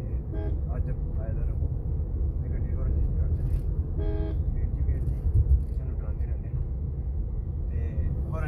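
Low road and engine rumble inside a moving Suzuki Swift hatchback. A short horn toot about half a second in and a stronger one about four seconds in come from the traffic.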